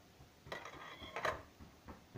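Light metallic clinks and clatter from a small folding camping gas stove's metal pot supports and legs as it is handled and set down, in two short bursts about half a second and a second in, with a brief metallic ring.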